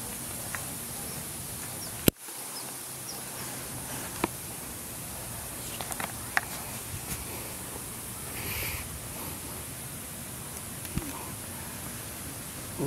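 Quiet outdoor ambience: a steady background hiss with a few faint ticks, and one sharp click about two seconds in.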